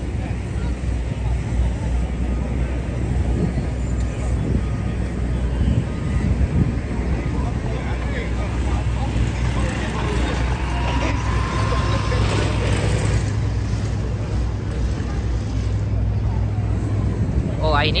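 Busy city street: a steady low rumble of traffic and engines with people talking in the crowd, a vehicle passing close around the middle.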